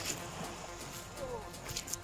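A faint voice murmuring a few quiet sounds, with a few light clicks.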